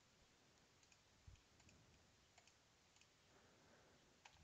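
Near silence, broken by a few faint computer-mouse clicks and a soft low thump about a second in.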